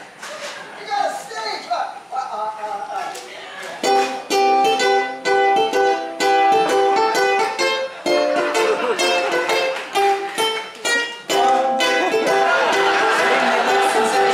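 A large group of ukuleles strummed and plucked together. They play in a steady rhythm starting about four seconds in, with a brief break near the middle. Voices chatter before the playing starts and again under it near the end.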